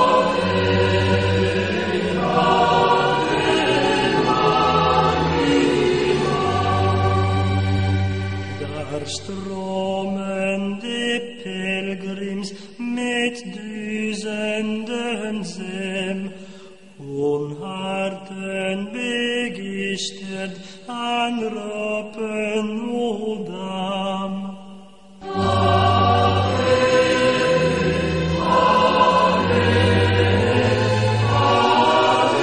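Background choral music: voices chanting in sustained notes. A low bass layer underneath drops out about a third of the way in, leaving lighter, more separated notes, and comes back near the end.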